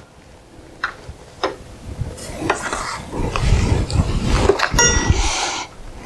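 Handling noise from test leads and their clips being set into a hard carrying case: a series of separate clicks and clinks, one ringing briefly near five seconds in, over rustling and bumping from about two to five seconds in.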